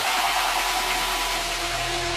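Techno track in a breakdown: the kick drum drops out, leaving a steady white-noise wash with a few faint held synth tones. Low bass notes come back in near the end.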